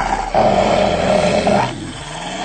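A cartoon sound effect of a large animal growling, lasting about a second and a half and then cutting off.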